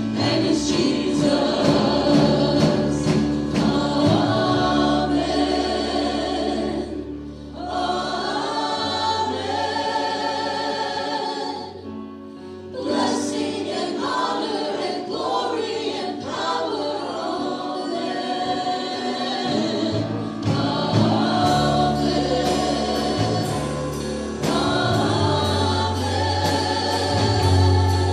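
Worship music: voices singing together over a band with steady bass and drums, dipping briefly quieter about twelve seconds in before building back up.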